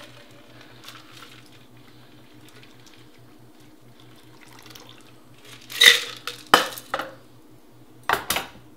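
A shaken cocktail strained from a stainless steel shaker tin through a coiled Hawthorne strainer into a glass, a faint pour. About six seconds in, loud metal clinks and knocks as the tin and strainer are set down on the counter.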